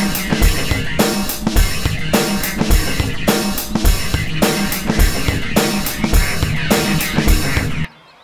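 Dramatic background music with a steady drum-kit beat, about two beats a second, cutting out suddenly near the end.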